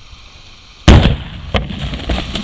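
Stunt pyrotechnic explosion: a single very loud blast about a second in, followed by a rumbling tail and several further sharp cracks.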